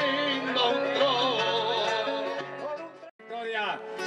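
Argentine folk music: a man singing held, wavering notes over instrumental accompaniment. The sound cuts out briefly a little after three seconds in, then the music resumes.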